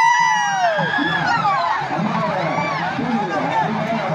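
A large crowd shouting and chattering. Near the start several shrill cries overlap, each rising and then falling in pitch over about a second, and fainter calls of the same kind come later.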